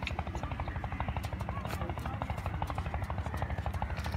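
A motor-like rumble with a fast, even pulse, running steadily with no change, with faint voices in the background.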